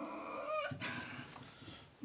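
A dry-erase marker squeaks on a whiteboard as a long curved line is drawn. A wavering high squeal in the first second gives way to softer scratching of the tip on the board.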